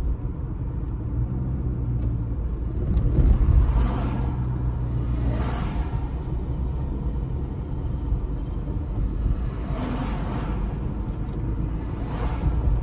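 Car driving in light traffic, heard from inside the cabin: a steady low rumble of road and engine noise that swells louder about three seconds in.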